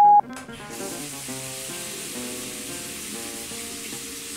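A steady electronic beep, the tone that ends a voicemail message, cuts off just after the start. About a second in, a steady hiss sets in under soft, sustained background music.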